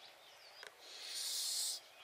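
A child blowing into a long rocket balloon to inflate it: one breathy hiss of about a second, starting about a second in.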